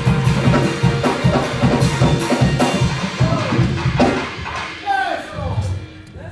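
Live band music driven by a drum kit with a steady beat, dying away about four seconds in, with a man's voice calling out near the end.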